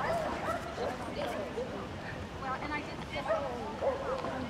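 A dog barking and yipping among people's voices, with a quick run of yips about two and a half seconds in.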